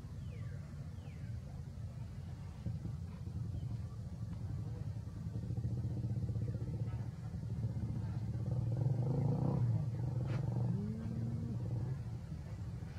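A motor engine running steadily with a low hum, growing louder around nine to ten seconds in, its pitch sliding up and back down near the end.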